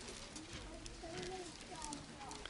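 Faint congregation noise in a church sanctuary: low murmuring voices with scattered small knocks and shuffles as people get to their feet.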